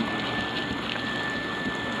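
Insulation blower running, air and cellulose fibre rushing through the hose as a steady hiss, with a thin high whine that cuts off at the end.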